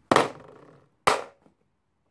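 Two sharp, loud smacks about a second apart, each dying away over a fraction of a second with a short ring in the room.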